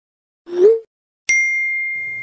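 Two animation sound effects for chat bubbles. About half a second in there is a short pop that rises in pitch, like a message bubble appearing. About 1.3 s in a bright chime strikes once and rings on, fading slowly, as a checkmark pops up.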